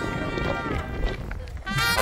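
Brass band playing, with people talking over it; the music thins out briefly and comes back louder near the end.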